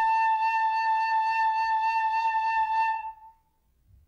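Carbony carbon-fibre high D whistle holding one long, steady note, the last note of the phrase, which stops about three seconds in.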